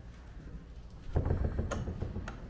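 Wooden room door being pushed open about a second in: a scuffing noise followed by a sharp click.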